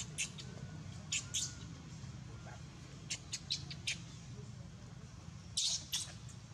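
Newborn baby macaque crying in short, sharp, high-pitched squeals, about ten of them scattered irregularly, with the longest and loudest near the end.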